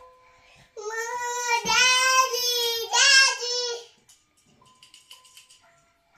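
A young child calling "Daddy, daddy" in a loud, drawn-out sing-song voice, over the faint plinking tune of a musical star-projector crib mobile. The child stops about four seconds in, leaving only the mobile's single melody notes.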